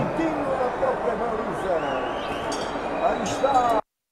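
Men's voices talking over a faint stadium background; the sound cuts off suddenly near the end.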